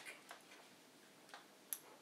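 Near silence: room tone with a few faint, irregular clicks, the sharpest one near the end.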